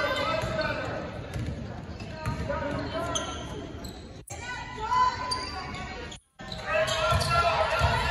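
A basketball being dribbled on a hardwood gym floor, with voices of players and spectators in the echoing gym. The sound drops out briefly twice, at about four seconds and just past six seconds.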